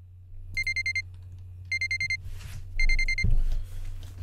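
Electronic alarm beeping in three bursts of rapid high beeps, each about half a second long and about a second apart, signalling that the 30-minute work session is up. A low thump follows near the end.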